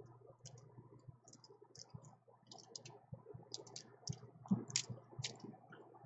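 Clear plastic nail polish swatch sticks on a ring clicking against each other as they are fanned and shifted by hand, in small irregular clicks with a few louder clacks about four and a half to five seconds in.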